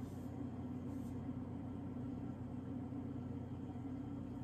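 Room tone: a steady low hum that holds at one level, with no other events.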